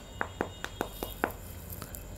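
A fingertip taps the hard knuckle protector of a motorcycle glove, giving a quick run of about six light clicks that stops after about a second.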